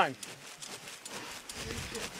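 Chest compressions on a CPR training manikin, a faint repeated clicking over a low outdoor background.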